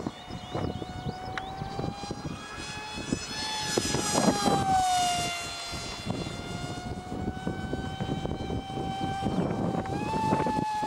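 Electric motor and pusher propeller of a Multiplex FunJet RC model jet whining steadily in flight. The whine grows louder about three to four seconds in and its pitch drops as the plane passes, then it settles to a steady tone again.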